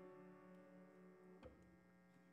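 Faint last piano chord dying away at the end of a hymn over a steady electrical hum, with a soft knock about a second and a half in.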